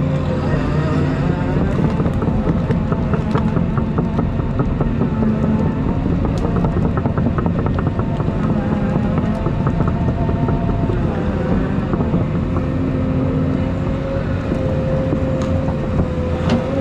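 Volvo EC220E excavator's diesel engine running steadily with a held hydraulic whine, heard from inside the cab, as the bucket and thumb push brush and stumps. Clusters of rapid snapping and ticking come a few seconds in and again around the middle.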